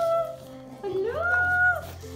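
A dog giving drawn-out howling whines, each rising in pitch, holding, then dropping away: one call trails off at the start and another comes about a second in.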